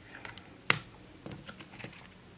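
Printed game cards being handled and set down onto a stack on a wooden tabletop: one sharp click about two-thirds of a second in, then a few fainter clicks and taps.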